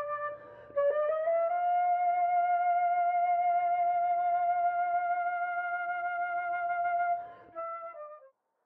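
Solo flute playing long tones: a short held note, a brief break, then one long note that settles slightly higher and is held with a light vibrato for about six seconds before fading, followed by a short last note near the end.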